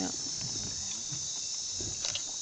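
Steady, high-pitched chorus of night insects, a dense unbroken shrill drone of many callers together.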